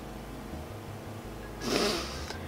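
A person's single sharp breath, heard near the end, over a low steady hum.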